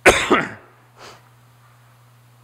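A man coughing: two loud coughs in quick succession, then a faint third sound about a second later.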